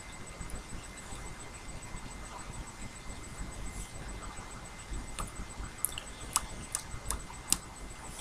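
Quiet room tone with a faint steady high whine, and a few faint sharp clicks in the second half from a lipstick applicator and tube being handled at the lips.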